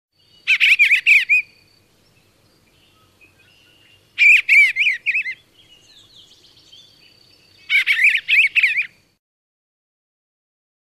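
Eastern bluebird calls: three short bursts of quick, clear chirps, each about a second long and a few seconds apart.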